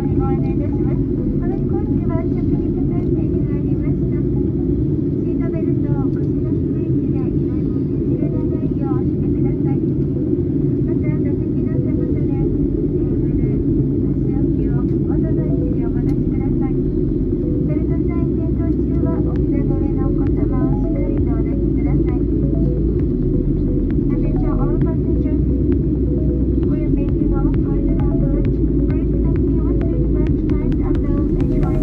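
Steady cabin noise of a jet airliner in cruise: a constant low rumble from the engines and airflow, with faint murmur of passengers' voices in the background.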